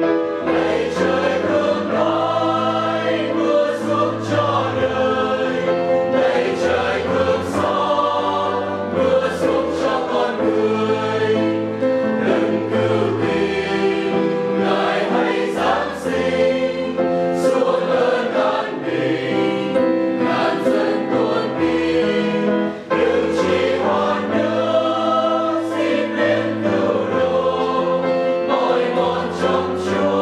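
Mixed choir of men's and women's voices singing a Vietnamese hymn in parts, with a short break for breath about 23 seconds in.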